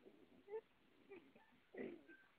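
A few faint, brief animal sounds, the loudest near the end.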